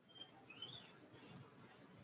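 Near silence: room tone with a few faint, short high-pitched squeaks.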